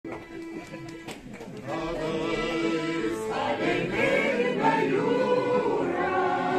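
Lithuanian mixed folk choir singing a folk song to piano accordion accompaniment. The opening second and a half is thinner and quieter, then the full group of voices comes in and the sound grows louder.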